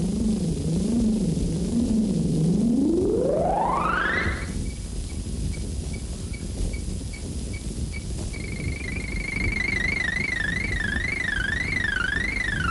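Electronic synthesizer sound effect. A low wavering tone sweeps smoothly up to a high pitch a few seconds in, pulses there in faint short beeps, and from about eight seconds in wobbles quickly up and down at the high pitch. Steady hiss lies beneath.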